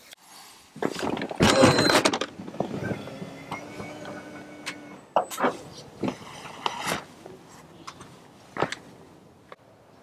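A car door being opened and someone climbing out, the loudest clatter about a second in, followed by a few separate knocks and thumps.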